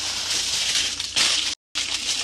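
Aluminium foil crinkling and rustling as it is wrapped and rolled around a potato, louder just after a second in. The sound cuts out completely for a moment near the end.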